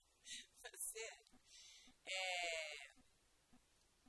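Soft, indistinct voice sounds close to a microphone: a few quiet murmured syllables, then one drawn-out voiced sound lasting most of a second, about two seconds in.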